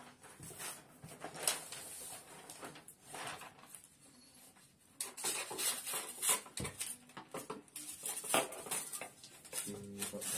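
Wrapping paper rustling and crackling as it is handled and cut, in irregular bursts that die down for a moment in the middle and pick up again after about five seconds.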